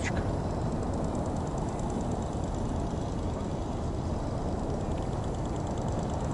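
Steady low outdoor background rumble of an open city square, with no single distinct event standing out.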